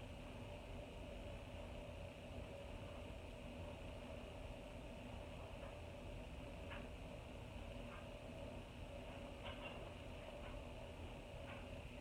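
Quiet room tone: a steady faint hum, with a few soft ticks now and then.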